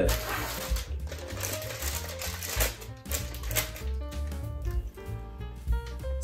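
Background music with a steady bass beat. Over the first four seconds or so it is joined by the crinkle and rustle of a plastic bag of chocolate chips being shaken out over a saucepan. The bag is empty, so there is no patter of chips falling.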